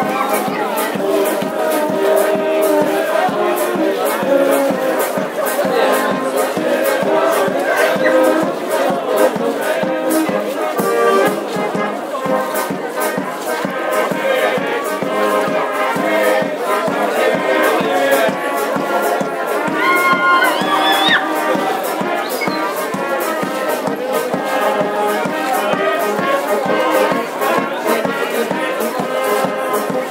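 Brass band playing a folk dance tune with a steady beat, with crowd noise beneath it.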